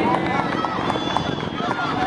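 Indistinct shouting from several voices of spectators and players at a children's football match, over a steady outdoor background noise.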